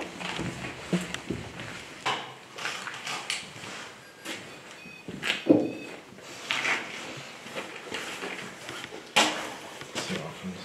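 Irregular knocks, scuffs and creaks of people moving about and handling things. The loudest are a thud about five and a half seconds in and a sharp knock near the end.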